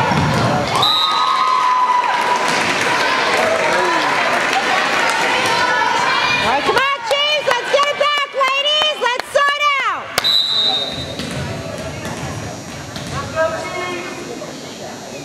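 Gym crowd cheering and shouting during and after a volleyball rally. A short high referee's whistle blows about a second in and again about ten seconds in. Between them, from about seven seconds, voices shout a loud rhythmic chant of repeated syllables.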